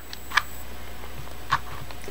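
Two faint small clicks, about a second apart, from a hot glue gun being worked against a utility knife blade as drops of glue go on. A steady low hum sits underneath.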